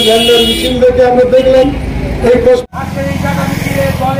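A man making a speech through a microphone and loudspeaker. About two-thirds of the way in it cuts off suddenly and gives way to a steady low mechanical drone with voices over it.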